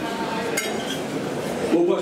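Tableware clinking at a dinner table: cutlery and glasses knocking against plates, with one sharp clink about half a second in, over a background of voices.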